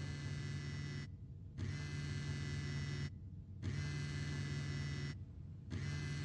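A mobile phone set to vibrate, buzzing in repeated pulses of about a second and a half, each followed by a half-second pause: an incoming call or alert going unanswered.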